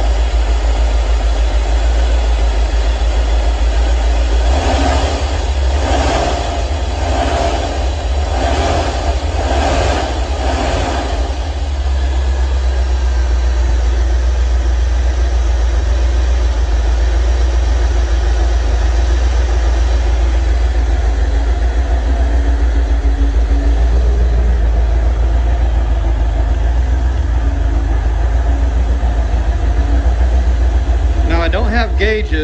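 A 1985 Corvette's 350 V8 with tuned-port injection idling steadily with its throttle body and idle air control valve freshly cleaned, an idle called "so much better" and "perfect right now". From about five to eleven seconds in, the engine note swells and fades about once a second, seven times.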